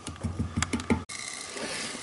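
A rubber kitchen spatula scraping and knocking inside the steel bowl of an oil centrifuge, working sludge toward the drain holes: a quick run of scrapes and light clicks in the first second, then only faint background noise.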